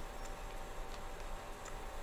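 Faint, irregular clicks of keys being tapped, a few a second, as the figures of a column are totalled. A steady low electrical hum with a faint whine runs underneath.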